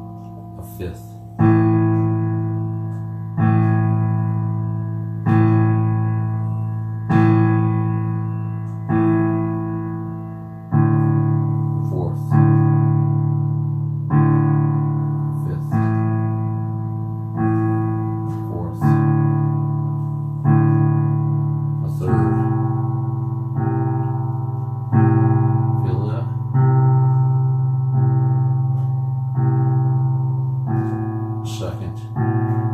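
Roland electronic keyboard on a piano voice, played as a chord struck about every two seconds, each left to fade before the next. The bass notes of the chord change about a third of the way in, again about two-thirds in and once more near the end.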